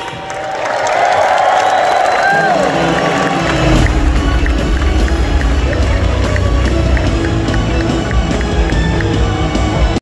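Arena crowd cheering and shouting, then music with a heavy bass line starts over the arena's sound system about three and a half seconds in and plays on under the crowd.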